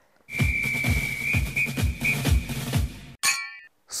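A short music jingle with a steady beat and a high, held, whistle-like tone. It cuts off about three seconds in and is followed by a brief bright ding.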